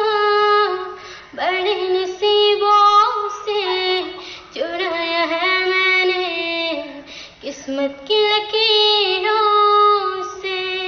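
A young girl singing solo with no accompaniment, holding long notes with slides in pitch. She sings in four phrases with short breaks between them.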